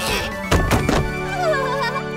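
Cartoon background music with two quick thunks a little after half a second in, then a wavering, warbling sound effect near the end.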